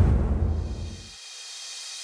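Tail of a logo-intro boom sound effect: a deep rumble fading over the first second, then cut off suddenly, leaving a faint hiss with a thin high ring.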